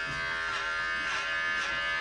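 Corded electric hair clipper buzzing steadily while being run through hair on the head, its tone swelling and fading about twice a second with each pass.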